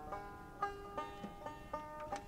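A banjo picked quietly, single notes plucked a few to a second, each ringing briefly.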